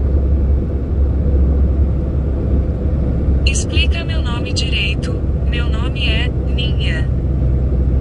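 Heavy truck's engine and road noise heard from inside the cab as a steady low drone while it drives along the highway. A high-pitched voice speaks over it for a few seconds from about the middle.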